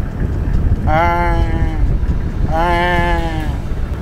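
Wind buffeting the microphone, with two long, slightly falling bleat-like calls about one and three seconds in, each lasting just under a second.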